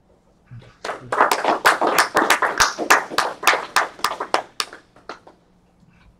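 Audience applauding at the end of a talk: hand-clapping starts about a second in, runs for about four seconds and thins to a few last claps near the end.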